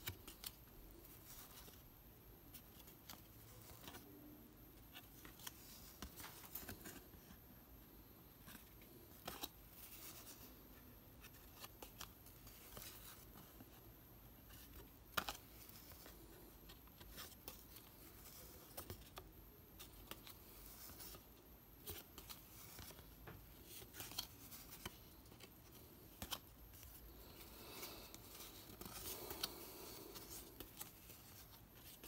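Faint, scattered clicks and soft scrapes of 1980 Topps cardboard trading cards being thumbed one at a time through a hand-held stack, card stock sliding and flicking against card, with one sharper click about halfway through.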